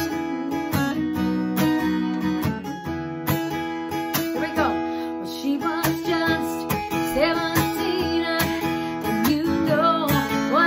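Taylor acoustic guitar, capoed, strummed in a steady rhythm. A woman's singing voice joins it about halfway through.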